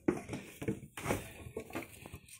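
Handling of a Peerless 2338 transaxle case as its upper half is lowered over the input shaft onto the lower half: a string of light, irregular knocks and rustles.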